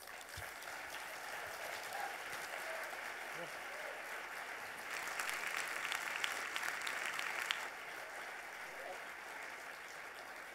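Audience applauding, growing louder about five seconds in and easing off after about seven and a half seconds.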